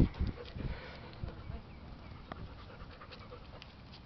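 A dog panting, louder in the first second or so and then faint.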